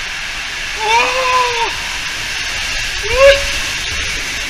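Water rushing through an enclosed water-slide tube under an inflatable ring, a steady loud hiss. Over it the rider lets out a long drawn-out 'o-o' exclamation about a second in and a short rising one near the end.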